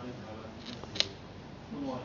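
A person speaking in short phrases, with one sharp, brief click about a second in, louder than the voice.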